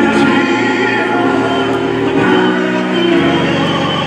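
A choir singing a slow hymn in long held chords that change a few times.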